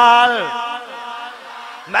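A man's chanting voice holds a note that slides down in pitch and dies away about half a second in, leaving a fading echo from the hall.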